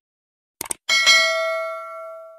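Subscribe-button sound effect: a quick double mouse click, then a bell ding that rings out and fades slowly.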